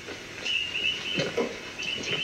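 Soundtrack of an old black-and-white film playing from a laptop: a string of short, high chirping calls, animal-like, with a couple of soft knocks a little past halfway.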